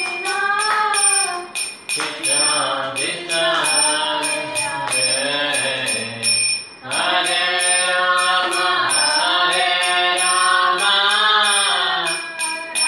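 A man singing a devotional chant in a sliding melody, with small metal hand cymbals clinking in a steady beat of about three strikes a second. The voice breaks off briefly a little past halfway, then carries on.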